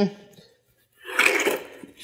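Cinder-block batter board being gripped and shifted on a concrete floor: about a second of gritty scraping and clinking, beginning about a second in.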